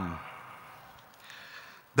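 The last word of an announcement over the hall's PA fades away in its echo, then low room tone with a faint breath at the microphone before speech resumes.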